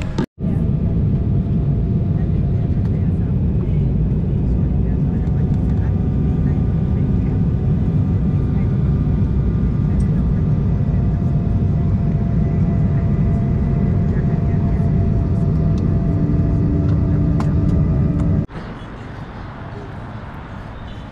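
Steady, loud engine and airflow noise of a jet airliner in flight, heard from inside the cabin, with faint steady whining tones over the low rumble. It cuts off abruptly near the end to quieter outdoor background noise.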